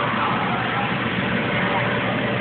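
Steady drone of an inflatable bounce house's electric air blower, with children's voices over it.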